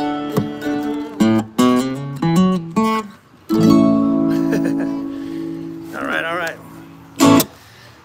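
Acoustic guitar and mandolin closing out a country song: a quick run of plucked single notes, then a final strummed chord left ringing and dying away. A short burst of voice comes near the end.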